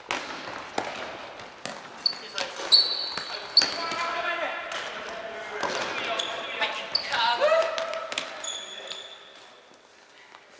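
Futsal being played on a wooden sports-hall floor: the ball being kicked and thudding at irregular intervals, sneakers squeaking, and players shouting, busiest in the middle and dying down near the end.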